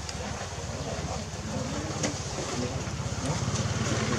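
A motor running with a low, fast, evenly pulsing hum, getting a little louder over the last second.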